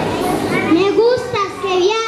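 A child's high voice speaking over a background of children's chatter, the voice starting a little under a second in.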